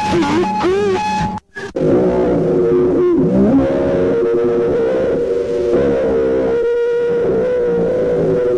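Lo-fi experimental noise music: warbling, wavering tones over a steady held note that cut off abruptly about a second and a half in. After a brief silence a dense drone of layered held tones comes in, with one tone that dips and climbs back about three seconds in.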